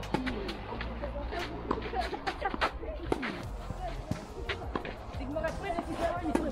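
Sharp knocks of a tennis ball struck by rackets and bouncing on a clay court through a served point, under background music.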